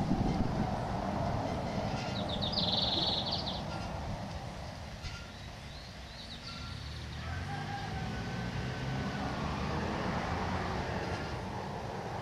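A rooster crowing, one long drawn-out call starting about seven seconds in, with a short high buzzy call about two seconds in, over a steady low rumble.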